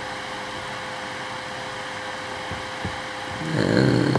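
Steady background hum and hiss with a faint constant tone and no distinct events. A voice starts to murmur near the end.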